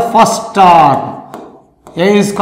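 A man's voice speaking, trailing off about a second and a half in; a couple of faint taps of a marker on a whiteboard fall in the short pause that follows.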